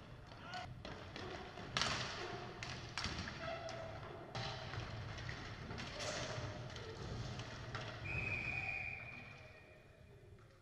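Inline hockey play in a reverberant sports hall: sharp knocks of sticks and puck on the wooden floor, with players calling out. Near the end a referee's whistle sounds one long steady blast of about two seconds as play stops at the goal.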